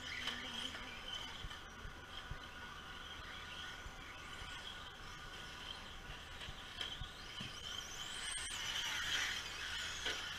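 Radio-controlled off-road cars running on a dirt track: a steady high-pitched motor whine, with one rising sharply about eight seconds in.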